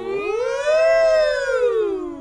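A performer's voice for a puppet dog giving one long wordless call that rises in pitch and then falls away.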